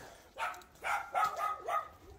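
A dog whining, with a few short yips and a thin, high whine in the second half.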